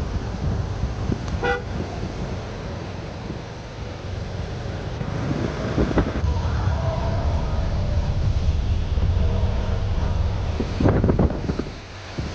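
Steady low road rumble and tyre hiss inside a moving car on a wet road, with a short vehicle horn toot about a second and a half in and further horn tones around six to seven seconds in. A few sharp knocks come near the end.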